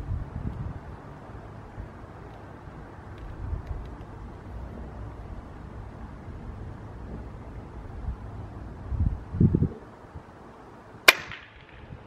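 A single suppressed shot from a .22 PCP air rifle (Taipan Veteran Short with a Hill Airgun 8-inch suppressor): one short, sharp crack about eleven seconds in. A couple of low thumps come about a second and a half before it.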